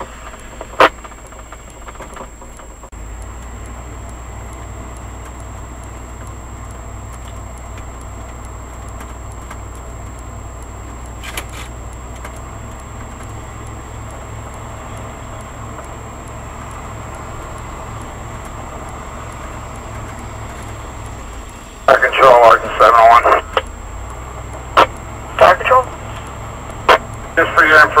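Engine and road noise of a fire-department vehicle heard inside the cab while driving: a steady low hum that comes up about three seconds in. Over the last several seconds, short bursts of two-way radio voice traffic break in.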